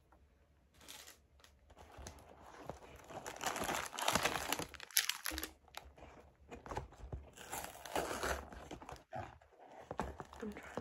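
Paper popsicle wrappers crinkling and a cardboard ice-pop carton rustling as a hand rummages inside it, starting about a second in and coming in two louder spells.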